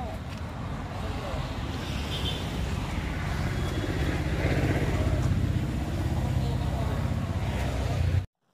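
Low, steady rumble of a motor vehicle's engine close by, growing louder after about three seconds.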